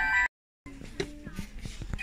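Electronic chime melody from a light-up musical Christmas decoration, cut off abruptly a moment in. After a brief silence comes quieter shop background with a few small clicks and faint voices.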